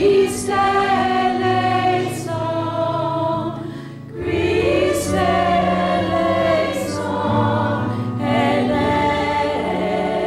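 Church choir of men and women singing, in phrases with a short break about four seconds in.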